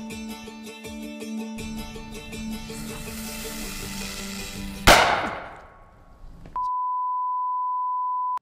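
Sodium metal exploding as it reacts with water: one sharp bang about five seconds in, with a hiss that fades over a second or so. Background music plays before the bang, and a steady high beep tone follows near the end.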